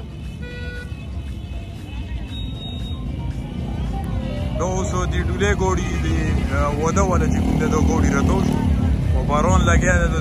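Road traffic passing close by: motorcycle and car engines, with the low rumble growing steadily louder. From about halfway in, a wavering singing voice with music sounds over the traffic.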